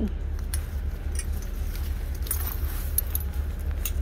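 Metal handbag hardware and display-rack hooks clinking and jangling in a few scattered clicks as a bag is fumbled onto a hook that it will not catch on, over a steady low hum.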